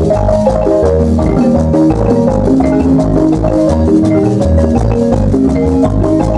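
Guatemalan marimba band playing a dance tune: struck wooden bars carry a melody of quick notes over a steady, regularly pulsing bass line.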